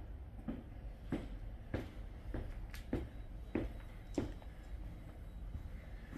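Footsteps on a hard floor, an even walking pace of about one step every 0.6 seconds for about four seconds, over a low steady room hum.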